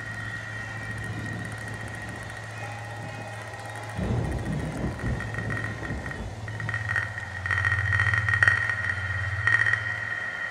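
Experimental electroacoustic sound art: a steady high tone over a low drone, with a sudden low rumbling swell about four seconds in and a louder, grainy, flickering texture building near the end.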